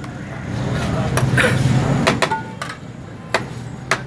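About six sharp, irregular knocks of a metal serving utensil striking a large steel rice tray as rice and meat are dished out, over a steady low hum.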